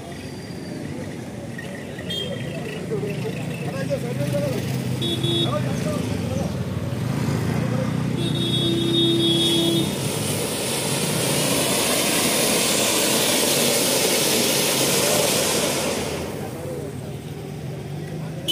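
Ground fountain fireworks hissing as they spray sparks: a loud, steady hiss builds from about eight seconds in and dies away near the end, over crowd chatter.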